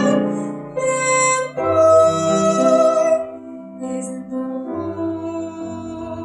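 Two women singing a slow, gentle duet with piano accompaniment, holding long notes. It becomes softer a little past halfway.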